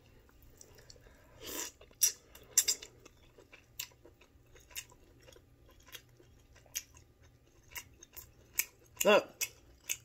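A person chewing king crab meat, with short wet mouth clicks and smacks at uneven intervals about once a second. A brief hum about nine seconds in.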